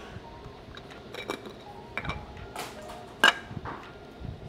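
Clicks and light clinks of a Fujifilm GFX 100S camera body and GF 110mm lens being handled on a wooden tabletop as the body cap comes off, with one sharper click a little after three seconds in.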